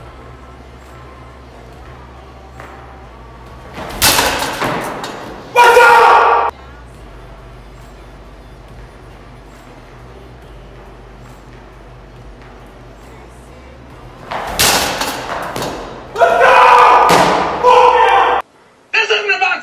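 Two hard-thrown baseballs striking the netting of an indoor pitching cage, each a loud thump fading over about a second. Each is followed a second or so later by a loud burst of voice, with a steady low hum between the throws.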